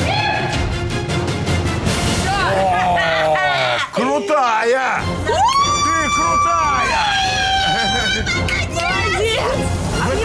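Women shouting and screaming over background music, with one long, high scream held for about a second and a half near the middle.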